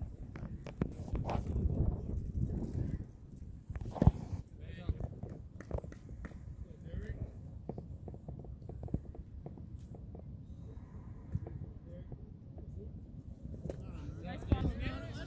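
Faint talk of spectators at a baseball game, with one sharp pop about four seconds in from a pitched baseball's impact, and a few softer knocks.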